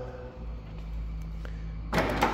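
A low steady rumble with a faint hum, then a sharp click near the end as the release button of a pickup's power drop-down tailgate is pressed.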